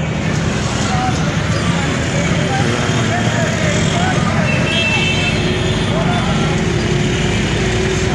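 Road traffic: a steady rumble of truck and motorcycle engines going past on a busy main road, with voices in the background.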